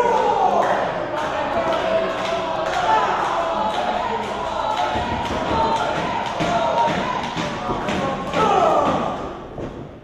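Raised voices shouting around a wrestling ring, with a few thuds on the ring mat.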